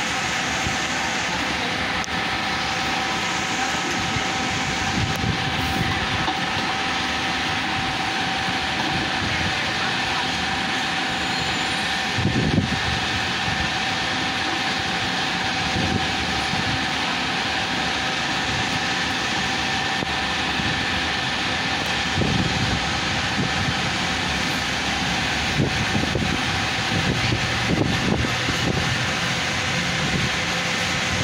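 Bus terminal ambience: idling diesel buses and a steady mechanical hum, with a few brief low swells of engine noise as a bus moves across the forecourt.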